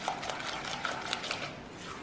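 A spatula beating a butter, sugar and egg mixture in a glass bowl, ticking against the glass in a quick, irregular run of small clicks.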